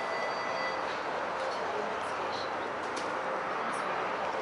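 TTC Flexity Outlook streetcar moving along its track, a steady rolling noise with a faint high whine in the first second and a few light clicks.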